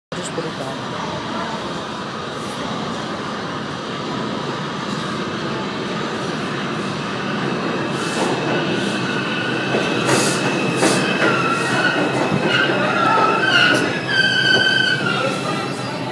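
R142 subway train pulling into an underground station, its rumble growing louder as it nears. Clacks over the rails come in from about eight seconds, and a wavering high squeal sounds near the end as the train slows alongside the platform.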